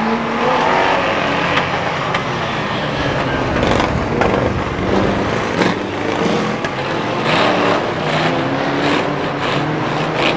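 Several stock car engines racing past, revving and rising and falling in pitch as the cars go by, with a few sharp knocks among them.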